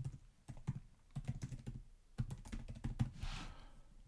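Typing on a computer keyboard: a quiet, irregular run of key clicks as a short two-word entry is keyed in.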